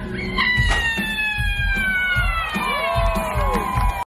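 Stage show soundtrack: a long, high wailing sound that glides steadily down in pitch over about three and a half seconds, with a few smaller swooping tones near the end and deep booms beneath.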